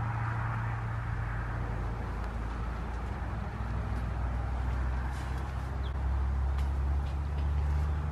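A steady low mechanical hum whose pitch shifts up slightly about five seconds in, with a few faint clicks.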